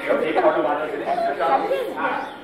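Speech: voices talking, the words not clear.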